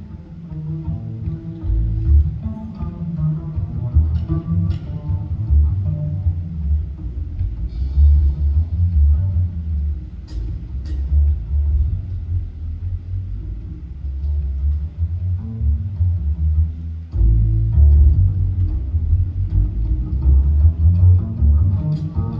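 Live small-group jazz: an upright double bass plays plucked low notes prominently, over light accompaniment with occasional cymbal taps.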